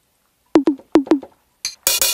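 Drum-machine sounds played back in Logic Pro X: four short percussion hits in two quick pairs, each dropping quickly in pitch, then a hiss like a hi-hat and a louder noisy drum hit near the end.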